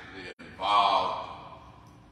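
A man's voice: one drawn-out syllable about half a second in, then fading.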